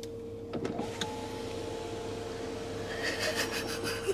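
Car's power window motor running as the driver's side window is lowered, a steady whine starting about a second in after a few clicks.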